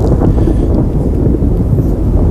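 Storm sound effect from a presentation slide: a loud, steady rumble of wind and thunder.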